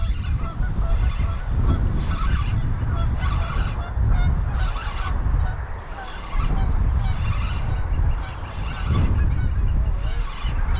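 Geese honking repeatedly, with wind rumbling on the microphone.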